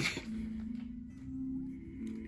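Background music with soft, sustained held notes.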